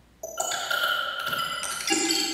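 Bell-like chiming tones: a cluster of pings starts suddenly about a quarter second in, and further tones join one after another, each ringing on and slowly fading. A lower tone comes in near the end.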